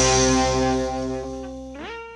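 The final distorted electric guitar chord of a lo-fi punk song rings out and fades steadily. Near the end its pitch slides upward.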